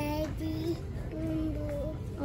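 Wordless singing in a high voice: a few short held notes, each under a second, with small slides between them, over a steady low background hum.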